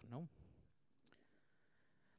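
Near silence after a spoken "no", with one faint click about a second in.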